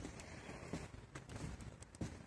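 Faint footsteps walking on a footbridge's walkway, a few soft irregular steps roughly every half second over a low rumble.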